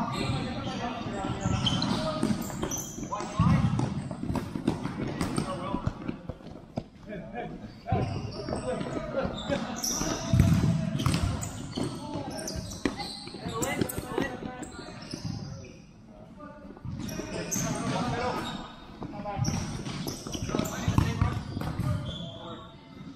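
Futsal ball being kicked and bouncing on a sport-tile court, the impacts coming irregularly, with players' voices calling out over the play in a large echoing hall.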